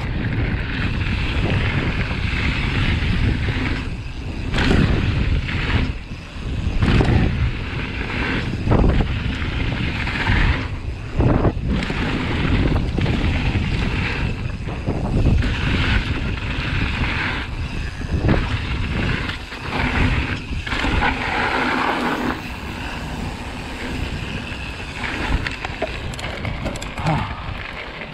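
Mountain bike ride heard from a rider-worn camera: wind buffeting the microphone over tyre rumble on dirt and gravel, with the bike rattling and several sharp knocks along the way.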